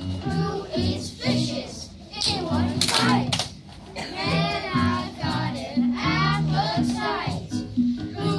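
Young children singing a song over backing music, with a couple of sharp clicks about three seconds in.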